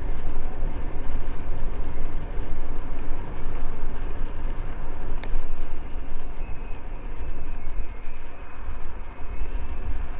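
Wind gusting over the microphone of a camera on a moving bicycle, a deep buffeting rumble, with tyre noise from the path underneath. A single sharp click about five seconds in.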